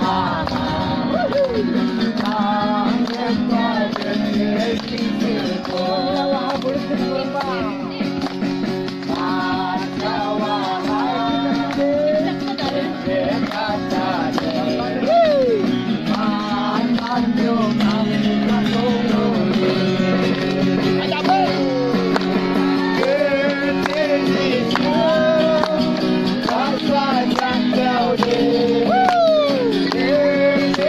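A group of voices singing a song together with acoustic guitar accompaniment.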